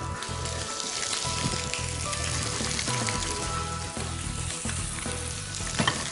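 Peanut-and-chilli-crusted red mullet fillets frying in a piping-hot pan of olive oil, a steady sizzle as the coating sears crisp.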